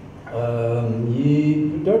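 A man's long, drawn-out hesitation hum, "mmm", held unbroken on one low pitch and then stepping up a little past the middle. It is him hesitating before he answers a question.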